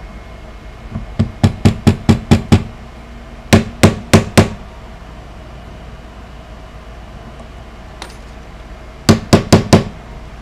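A soft-faced mallet tapping a metal punch, driving a glued wooden plug into the truss-rod access of a Stratocaster neck. There are three quick runs of sharp taps, about four a second: seven taps, then four, then four more near the end, as the plug is seated.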